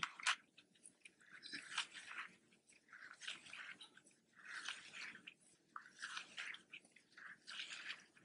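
Faint, scattered rustles and soft clicks of yarn being drawn through stitches and onto a Tunisian crochet hook as loops are picked up.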